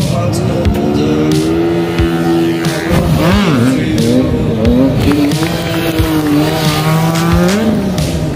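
Two-stroke scooter engine at full throttle in a drag run, its note held high and steady, dipping and bending once midway and rising again near the end. Background music plays underneath.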